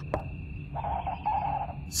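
Night ambience sound effect: crickets chirping steadily, with a lower, more muffled sound lasting about a second from partway through, over a low background rumble.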